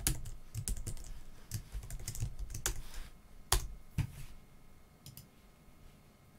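Computer keyboard being typed on: a run of quick key clicks, busy for the first few seconds, with two louder keystrokes about three and a half and four seconds in, then thinning out and stopping near the end.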